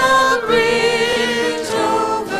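A small group of voices singing a worship song together in harmony, the notes held with vibrato and changing every second or so.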